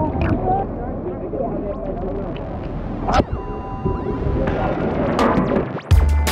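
Sea water lapping and splashing around a camera held at the water's surface, with indistinct voices in the background; a sharp knock about three seconds in.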